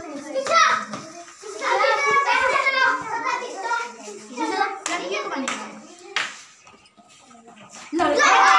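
Several children talking and calling out over one another in a hard-walled corridor, with a few sharp claps or slaps about five to six seconds in; the voices die down near the end.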